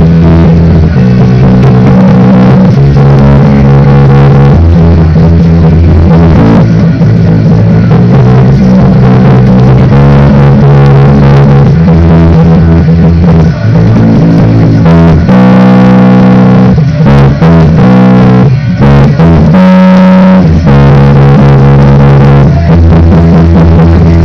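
Electric bass guitar playing a punk rock bassline in E major, loud and continuous, with held notes that change every second or two and a different run of notes about two-thirds of the way through.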